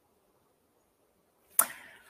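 Near silence, then near the end a short, sharp intake of breath that starts suddenly and fades quickly, taken just before speaking.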